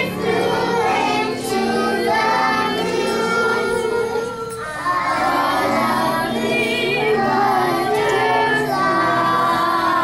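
A group of young children singing a song together over music, with held low musical notes under their wavering voices throughout.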